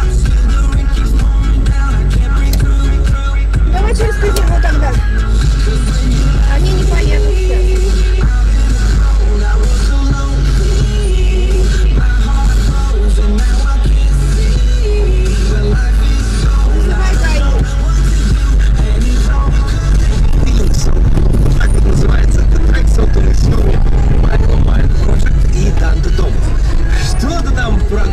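Loud background music running throughout.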